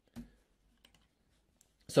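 Computer keyboard keystrokes: one clearer click just after the start, then a few faint scattered taps.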